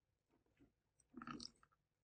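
Near silence, broken about a second in by a short burst of faint clicking from keystrokes on a computer keyboard.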